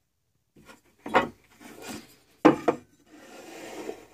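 A metal speed square being handled against a tabletop: two sharp clacks as it is set down or knocked into place, with scraping between them and a longer sliding rub near the end as it is pushed along the surface.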